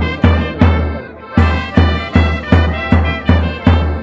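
Brass band playing a dance tune: trumpets and other brass over a steady bass drum beat, nearly three beats a second, with a brief break in the beat about a second in.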